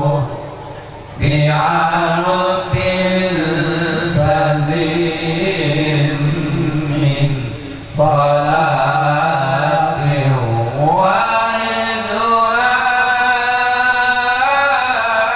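Older men's voices chanting Malay Islamic devotional verse into microphones, amplified over a sound system. The lines are long and drawn out, with ornamented glides in pitch. Two short breaks for breath fall about a second in and again just before eight seconds.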